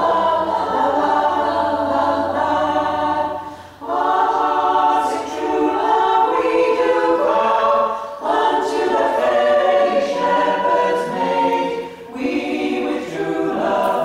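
Women's a cappella choir singing in several parts, unaccompanied, in phrases with short breaths between them about every four seconds, in a reverberant stone church.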